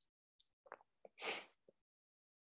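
A man's short, sharp intake of breath, with a few faint mouth clicks just before it; otherwise near silence.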